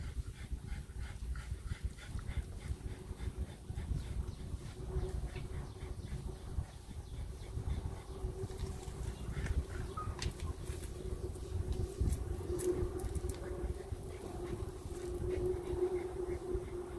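Small sounds from a bulldog puppy over a steady low rumble, with a steady hum that grows louder in the second half.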